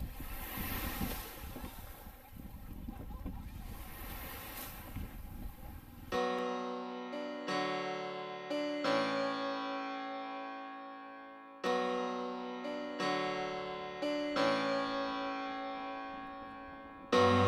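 Small waves wash on a sandy beach, a soft rushing with faint music beneath. About six seconds in, background music of plucked notes and chords takes over; each note strikes sharply and rings away.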